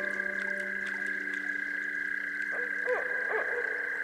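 Frogs calling over soft relaxation music: a steady high-pitched chorus runs under a held low drone note. From about two and a half seconds in come several short calls that rise and fall in pitch.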